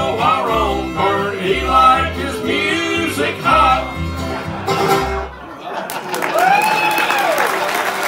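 Bluegrass jug band of clawhammer banjo, fiddle, acoustic guitar and upright bass playing the song's final bars, with steady bass notes about once a second, ending about five seconds in. Audience applause and cheering follow, with a few long whoops over the clapping.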